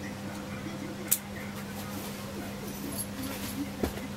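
Faint voices in the background over a steady low hum, with a sharp click about a second in and a short knock near the end.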